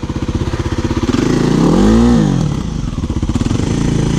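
Kawasaki KLX single-cylinder four-stroke dirt bike engine idling with an even putter. It is revved once, rising and falling back to idle over about a second and a half, with the peak near the middle.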